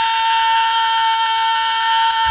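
A male rock singer holding one long, high, very steady note.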